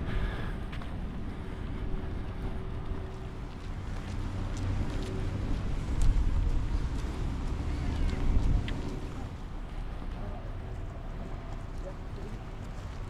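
Wind buffeting the microphone outdoors: a gusting low rumble that swells for a few seconds past the middle and then eases, over a faint steady hum in the first half.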